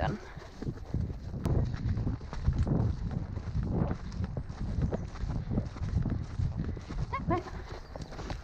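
A pony's hoofbeats on soft, wet grass, a run of dull thudding footfalls.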